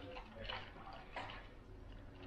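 Ice cubes rattling in a plastic cup as a straw stirs a protein shake over ice, with faint clinks about half a second and just over a second in.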